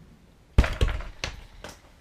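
A door shutting with a heavy thunk about half a second in, followed by a few lighter knocks and clicks.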